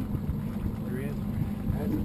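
Evinrude outboard motor idling with a steady low hum.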